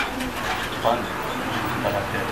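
A bird calling behind a man's speech, with a sharp click right at the start.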